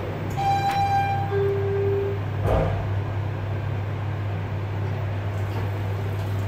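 Guangri machine-room-less elevator arriving: a two-note electronic arrival chime, a higher tone then a lower one, followed about two and a half seconds in by a knock as the car doors start to open. A steady low hum of the car runs underneath.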